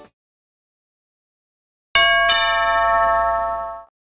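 Silence, then a bell-like two-note chime (ding-dong) about two seconds in, ringing out and fading over roughly two seconds.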